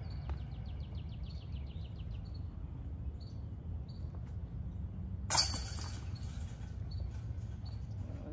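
A disc golf disc strikes the chains of a metal basket about five seconds in, making one sudden, loud metallic crash that dies away within about half a second. A bird trills rapidly during the first two seconds, over steady low background noise.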